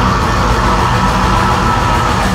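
Loud live heavy music: distorted electric guitar and bass, with a high guitar note held steady over them and no vocals.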